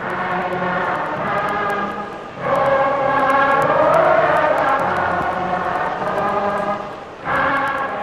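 A choir singing long held notes, swelling louder about two and a half seconds in, with faint clicks running through it.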